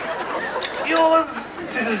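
A man's voice, laughing loudly, with a drawn-out vowel about a second in.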